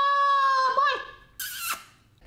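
A man's high falsetto yell, one drawn-out note held for about a second that wavers and fades, followed by a short breathy hiss.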